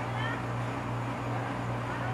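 A steady low hum, with faint high-pitched calls gliding up and down over it in the first half-second.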